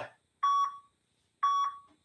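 Electronic interval timer giving two short beeps about a second apart, each fading quickly. The beeps mark the circuit's work and recovery intervals.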